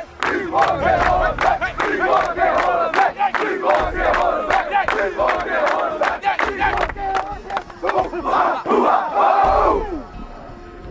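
A football team huddled together, chanting and yelling in unison over sharp rhythmic hits about two to three a second. It builds to one long shout near the end and then cuts off suddenly.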